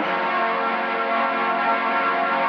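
Film background score of sustained, ringing bell-like tones, struck afresh right at the start.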